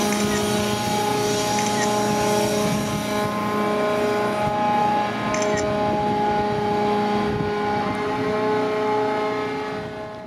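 Water pouring out of the opened grab bucket of the grab dredger Gosho and splashing into the sea, dying down about three seconds in. Under it, the dredger's crane machinery hums steadily with several fixed tones.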